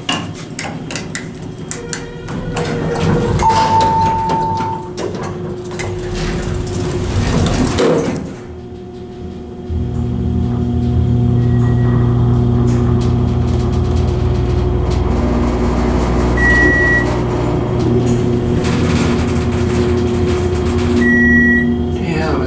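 Elevator car doors closing with knocks and rumble, with a short electronic beep about three and a half seconds in. About ten seconds in, the 1984 United States dry-powered hydraulic elevator's pump motor starts, and the car rises with a steady low hum, broken by three short high beeps.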